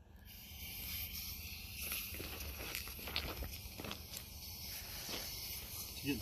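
Quiet outdoor background: a steady hiss with a low rumble of wind on the microphone and a few faint clicks and scuffs.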